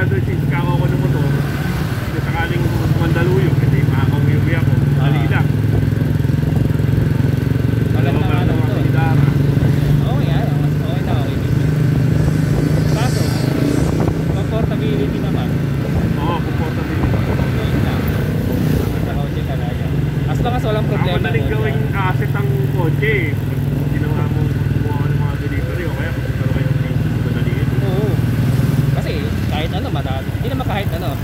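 Motorcycle engines running at low road speed in traffic: a steady engine drone from a scooter riding close behind a motorcycle-sidecar tricycle.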